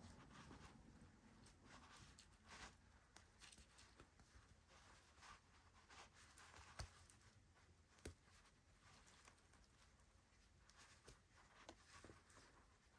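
Near silence with faint, scattered small clicks and clinks of metal jewelry chain and a snowflake pendant being untangled by hand.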